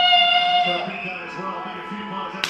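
Voices singing, heard through a phone's speaker: one long held note that ends about three-quarters of a second in, then quieter, wavering sung and spoken sounds.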